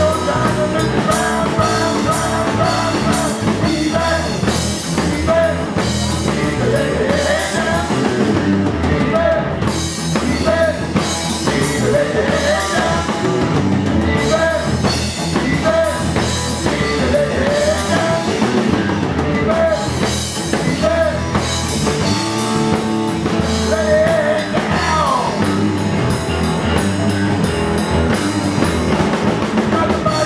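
Live rock band playing a rockabilly-style number: electric guitars, electric bass and drum kit, heard through the room.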